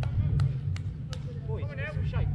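A football being kicked during play on an artificial pitch: four sharp knocks, about a third of a second apart, in the first second or so. Players shout near the end, over a steady low rumble.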